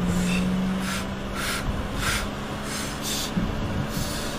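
A woman in labour breathing through a contraction: a run of short, forceful puffed breaths over a steady low hum. A car's engine and road noise run underneath.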